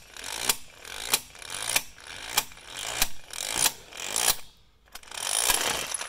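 12V corded electric impact wrench hammering on a Hummer H2 lug nut tightened to 140 ft-lb: seven sharp strikes, each about two-thirds of a second apart, with the motor whirring between them. After a short lull near the end it runs on continuously with a high whine as the nut breaks free and spins off.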